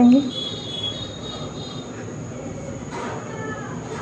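Steady hiss of lit gas stove burners, with a faint, high metallic squeak during the first second and a half and a shorter one about three seconds in, as an aluminium pressure cooker is closed and set on a burner.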